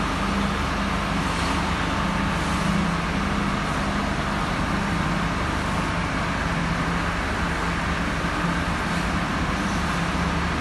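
A vehicle engine running steadily at an even pitch, under a steady hiss of water spraying from a high-pressure hose onto stone pavement.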